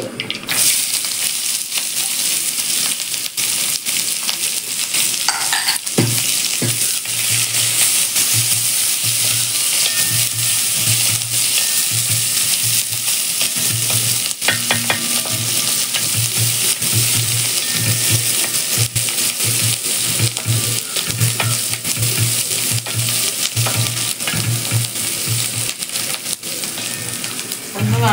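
Chopped onion sizzling as it goes into hot oil in a brass pan, the sizzle starting about half a second in and holding steady. A wooden spatula stirs it, making repeated scraping strokes against the pan.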